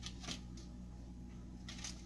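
Faint, brief rustles and scrapes of cut-out shortbread dough being set onto a wax-paper-lined cookie sheet, one just after the start and one near the end, over a steady low hum.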